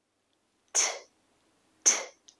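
A woman saying the phonics sound of the letter T: a short, breathy, unvoiced 't', twice, about a second apart.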